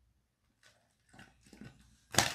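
Faint, short sucking sounds through a wide bubble-tea straw, about three of them, as bubble tea with tapioca pearls is drawn up.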